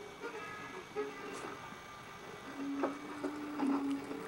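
A Jack Russell terrier chewing a piece of green bell pepper, with a couple of soft crunches, under faint television sound that holds a steady tone through the second half.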